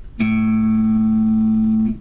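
Electric guitar's open A string picked once with distortion, ringing steadily for about a second and a half, then muted just before the end.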